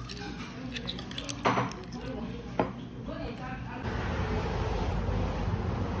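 Restaurant sounds: a few light clinks of a spoon against a stone stew pot amid background voices. About four seconds in, these give way to a steady outdoor hiss of passing road traffic.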